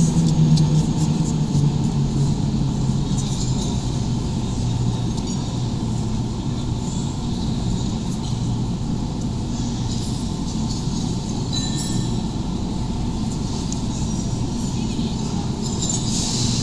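Eurostar high-speed electric train moving slowly along the platform: a steady low electric hum, with faint scattered clicks.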